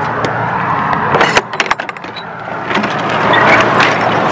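Metal latch on a U-Haul box truck's rear roll-up door clicking and clanking as it is unlatched, followed by the door rattling as it is rolled open.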